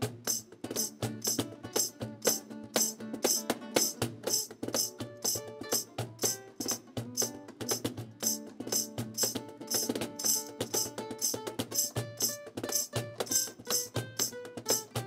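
Background music with a steady, quick percussive rhythm and short struck or plucked melodic notes.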